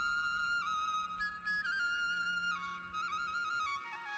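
Background music: a solo flute melody that climbs in steps, then holds long notes with small ornamental turns.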